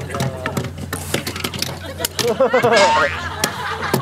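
Voices talking briefly, with a scatter of sharp clicks and knocks through the whole stretch.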